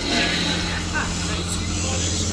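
Steady low mechanical drone made of several held low tones, part of an animated short's soundtrack.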